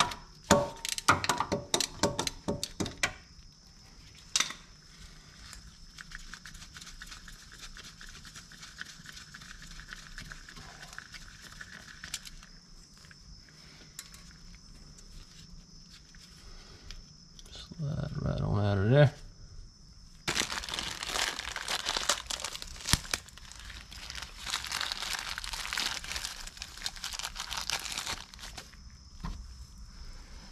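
Sharp clicks and knocks of a ratchet and wrench working a 10 mm bolt on the crank position sensor in the first few seconds. A short rising tone a little past halfway, the loudest moment, is followed by about eight seconds of plastic packaging crinkling and tearing.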